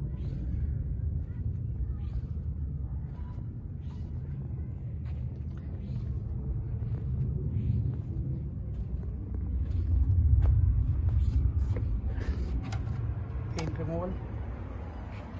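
Low, uneven rumble of wind buffeting a phone microphone outdoors, swelling about ten seconds in, with scattered light clicks.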